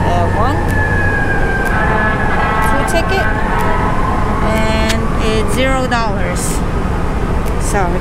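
City traffic rumbling steadily, with a siren's long tone slowly falling in pitch over the first few seconds. Brief voices come in near the end.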